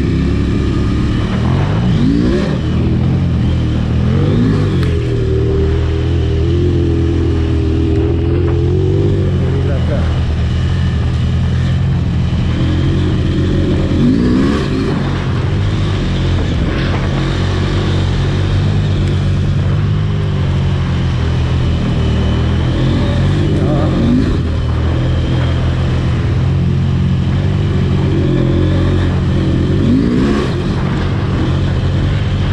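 KTM 890 Rally's parallel-twin engine running under load off-road, the throttle rolled on and off so the revs rise several times, over wind and tyre noise on sand. Near the end the bike splashes through shallow water.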